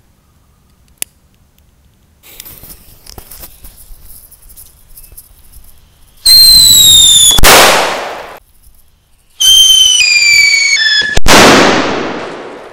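Whistling thunder firecrackers wrapped in a large paper roll: after a few seconds of fuse hiss, two loud shrill whistles go off. Each falls in pitch and ends in a sharp bang, the first about six seconds in and the second near the end.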